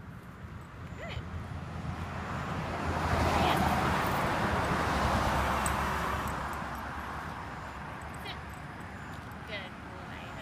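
A car passing on the street: tyre and engine noise swells over a few seconds, peaks in the middle, then fades away.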